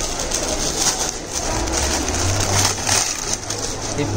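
Crinkling and rustling as saree silk and its clear plastic wrapping are handled and unfolded.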